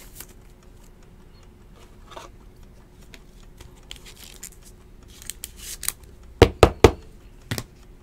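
Trading cards and clear plastic card holders being handled: faint rustling and sliding, then three sharp clicks in quick succession near the end and one more a moment later.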